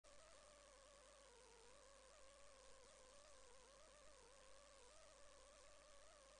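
Near silence: faint hiss with a faint, slightly wavering steady tone underneath.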